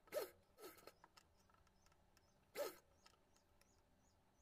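Near silence, broken by three brief soft swishes: two close together right at the start, then one more in the middle. They come from fabric being handled and pleated at a sewing machine.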